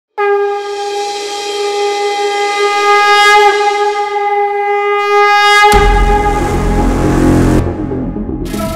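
Conch shell (shankh) blown in one long, steady note for about five and a half seconds, then a sudden deep booming hit of soundtrack music with a rumble that carries on to the end.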